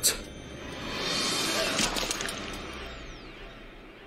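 Sound effects from a TV drama soundtrack: a sharp crash-like hit, then a swelling rush of noise that fades away, with a thin falling whine through its second half.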